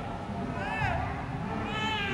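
A child's high-pitched voice squealing twice, each call rising and then falling in pitch, over steady background noise.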